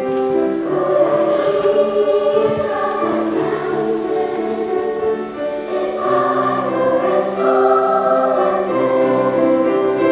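Children's choir singing in harmony with piano accompaniment, long held notes moving from chord to chord.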